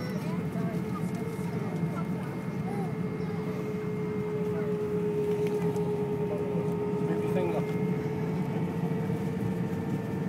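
Cabin noise inside an Airbus airliner taxiing: the jet engines' steady low hum with a steady whine held at one pitch, and passengers talking in the background.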